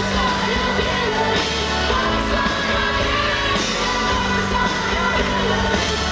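Live indie-pop band playing: sung vocals over keyboards, drums and bass, loud and steady, recorded from within the crowd in a concert hall.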